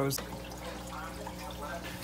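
Running aquarium filter: water trickling steadily into the tank, with a faint steady low hum.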